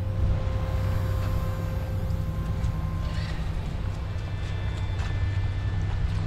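A steady low hum, with a faint high, thin whine over it that fades away two or three seconds in.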